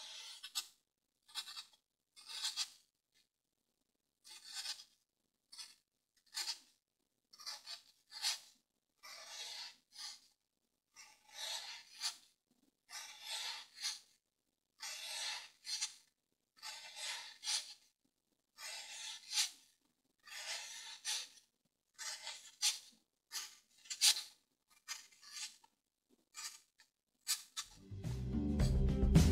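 Snap-off craft knife blade drawn through dry floral foam in short cutting strokes, each a brief dry scratchy rasp with silence between, about one stroke a second.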